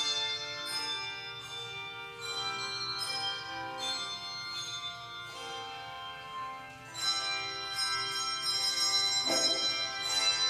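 Handbell choir playing: chords of bell notes struck and left to ring, a louder passage beginning about seven seconds in.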